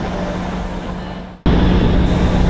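Background music fading out, then an abrupt cut about a second and a half in to the loud, steady engine drone inside the cabin of a small high-wing aircraft.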